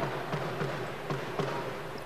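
A handball bouncing on a wooden sports-hall floor, a few faint short thuds over a steady hall background.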